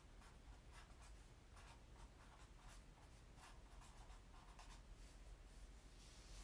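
Faint scratching of a pen on paper in short, irregular strokes, as someone draws.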